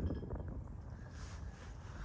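Wind buffeting the phone's microphone: a faint, steady low rumble.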